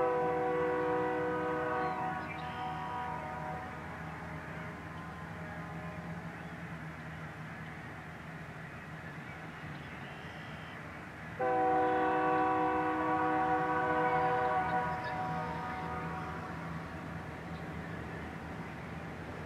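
Diesel locomotive air horn sounding two long blasts about eleven seconds apart, the second one longer, over a steady low hum.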